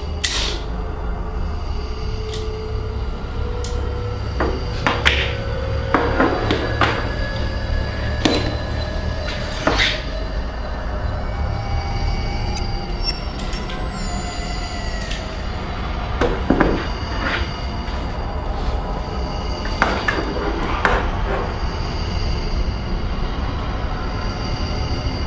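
A low, steady droning film score, with sharp clicks and knocks scattered through it, bunched about a fifth of the way in and again past the middle.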